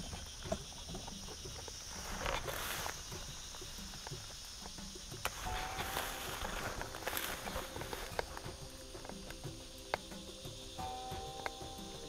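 Footsteps and rustling through brush and leaves, with a few short hissing bursts of a foliar herbicide spray wand. Insects buzz steadily in the background.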